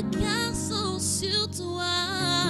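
Gospel worship song: a voice singing a winding, wordless line that bends up and down over held accompaniment chords.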